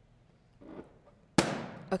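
A rubber party balloon popped by hand: one sharp bang about one and a half seconds in, trailing off quickly.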